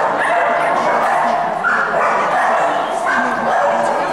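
Dog barking and yipping almost without pause, in a run of high-pitched calls that starts suddenly.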